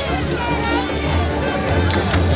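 Hip-hop music with vocals over a heavy, pulsing bass beat.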